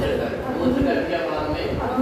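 Only speech: a man lecturing in Hindi.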